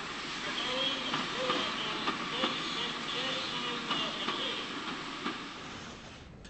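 Steam locomotive and train running past, a steady rush of steam and running noise with a few sharp clicks from the track, in an old recording.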